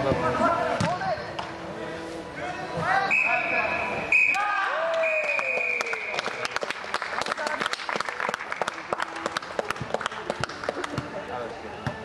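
A referee's whistle blown in a long steady blast, broken twice, about three seconds in, over shouting voices. It is followed by several seconds of rapid sharp knocks.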